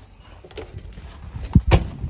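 A motorhome's gas locker door being shut: two hard knocks in quick succession near the end, after some faint handling noise.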